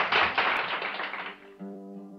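Audience applause dying away over about a second and a half. A harmonica then starts a steady held chord about one and a half seconds in.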